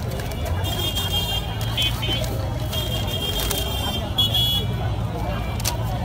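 Busy street ambience: a steady low rumble with people's voices in the background, and short high-pitched horn tones sounding again and again through the first two-thirds.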